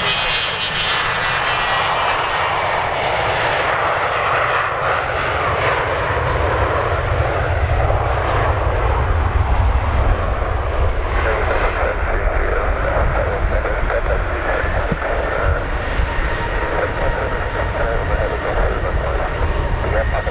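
Bombardier BD-700-1A10 business jet's twin Rolls-Royce BR710 turbofans running at takeoff power through the takeoff roll, lift-off and climb-out. The deep rumble grows and is loudest around the moment of lift-off, about halfway through. After that the higher hiss thins as the jet climbs away.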